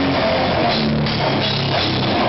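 Live metal band playing loud, with the drum kit close and dominant: fast, dense drumming over held distorted guitar notes.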